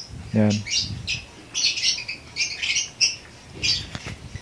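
Small cage birds chirping repeatedly, short high calls coming two or three times a second.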